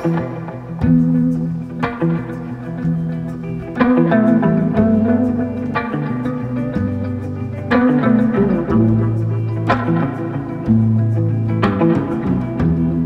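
Instrumental spaghetti-western-style guitar music: plucked guitar notes ring out every second or two over sustained low notes.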